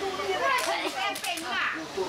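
Background chatter of several people talking at once, with children's voices among them.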